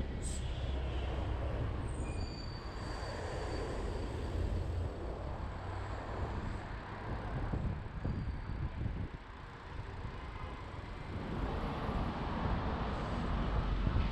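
Road traffic heard from a moving bicycle, with a city bus running alongside, over a steady low rumble of wind on the camera's microphone.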